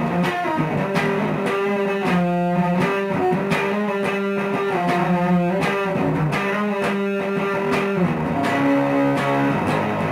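Electric guitar, a modified Squier Jazzmaster, played through a Bearfoot Candiru Apple Fuzz pedal into a Marshall MG30FX amp: a riff of held, fuzzed notes and chords that change every second or so.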